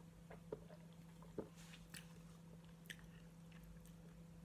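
A person gulping from a drinks can: a few faint swallows within the first second and a half, then near silence.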